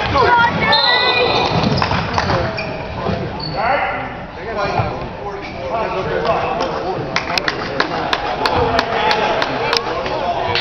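Spectators' voices shouting and calling at a basketball game, then a basketball being bounced in a quick run of sharp knocks, about three a second, near the end.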